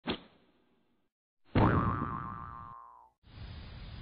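Intro sound effects: a short sharp hit at the start, then about a second and a half in a cartoon boing whose pitch slides down over about a second and a half. Near the end a steady outdoor hiss from the security camera's microphone takes over.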